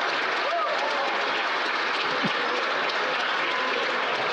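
Members of Parliament applauding steadily in the House of Commons chamber, with voices calling out underneath.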